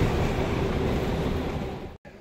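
Steady rumble of a local bus's engine and road noise heard from inside the passenger cabin, fading out just before the end.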